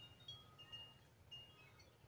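Faint wind chimes ringing, a few scattered high, clear notes over near silence.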